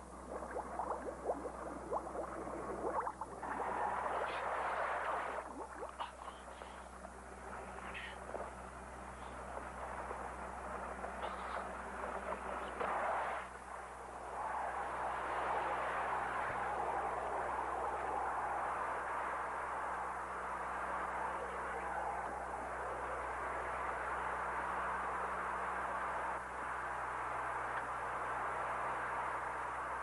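Sea water in a film soundtrack: bubbling and splashing with scattered short sounds in the first half, then a steady rushing of water, over a faint low hum.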